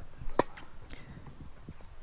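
Tennis ball knocks on a hard court: one sharp knock about half a second in, then a few fainter ones, over a faint outdoor hush.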